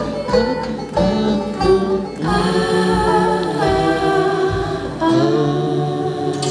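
A live band plays with a female lead singer: electric bass, guitars, keyboards and drum kit, with the kick drum beating about twice a second. About five seconds in the drums drop out and the band holds a long chord.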